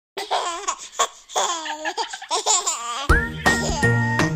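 A baby laughing in a string of short giggles. About three seconds in, music starts with steady held notes and a bass line.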